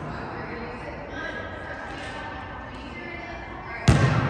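A basketball bouncing once on a gym's hard floor near the end, with the hall's echo trailing after the hit.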